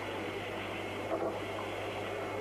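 Steady hiss and a low hum from an old broadcast recording, with faint indistinct sound underneath.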